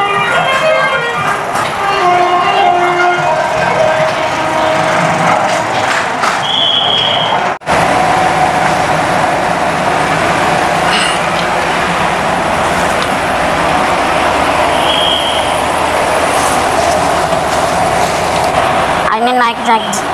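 Steady running noise inside a bus cabin, with a short high beep about halfway through.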